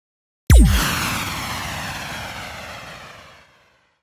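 Cinematic logo-intro sound effect: a sudden heavy hit about half a second in, its pitch dropping fast, followed by a rushing noise that fades away over about three seconds.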